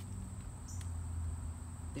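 A steady high-pitched insect drone in the background, over a low rumble, with a short faint chirp under a second in.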